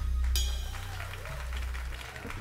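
A live band's closing chord ringing out: a low sustained note fading away over about a second and a half, with a sharp high hit about a third of a second in, as the audience starts to applaud.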